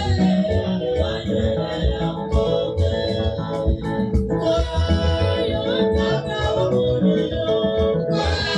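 Women's choir singing a gospel song over an amplified band accompaniment, with a steady bass beat and sustained keyboard chords.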